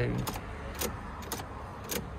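Ignition key of a Mark 7 Ford Fiesta being turned on and off in the lock, sharp clicks about every half second with the keys on the ring knocking, as the ignition is cycled to put the car into remote-key programming mode.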